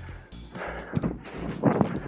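A player running in and going down into a slide tackle on dry grass: quick steps, then a louder thud and scrape near the end as the body hits the turf and the foot traps the soccer ball. Quiet background music runs underneath.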